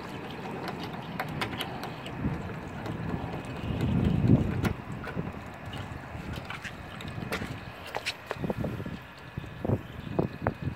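Wind on the microphone, swelling into a louder gust about four seconds in, with scattered small metallic clicks and taps as the drain valve at the base of an old, rusted water heater is worked by hand.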